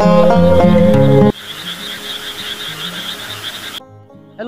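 Background music that stops abruptly about a second in, followed by a chorus of frogs croaking with a pulsing high-pitched trill, which cuts off sharply just before the end.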